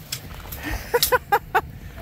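A man laughing: four short bursts of laughter in quick succession, starting about a second in.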